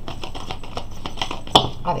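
Tarot cards being handled and laid down, with a run of small clicks and rustles and a sharper click about one and a half seconds in.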